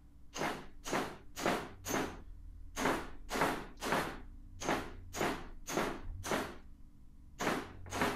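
A steel hammer striking the old welded-on bearing eye of a hydraulic ram, about fifteen ringing metal-on-metal blows, two to three a second in short runs with brief pauses. The weld has been ground almost through, but the mount does not come free.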